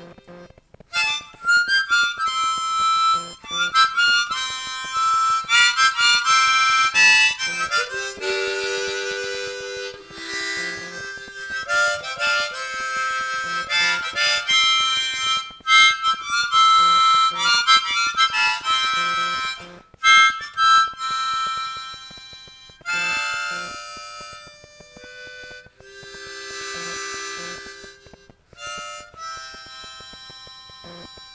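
Harmonica played solo, hands cupped around it: a run of held notes and quickly changing notes and chords, broken now and then by short pauses.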